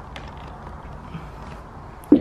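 Faint creaks and handling noise as a hinged in-floor storage hatch in a cargo trailer floor is worked open by hand.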